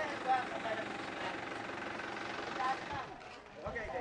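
A steady motor hum, like an engine running, with brief snatches of people's voices over it; the hum stops about three seconds in.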